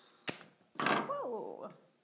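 Scissors cutting through the plastic base of a floral foam ring with one sharp snap. Soon after comes a louder, brief wordless voice sound whose pitch falls.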